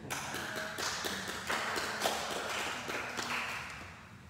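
A few people clapping their hands, an irregular patter that dies away near the end.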